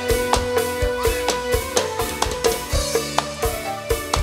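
Live band music led by percussion: drums strike a quick, even beat, about four hits a second, under a held keyboard melody.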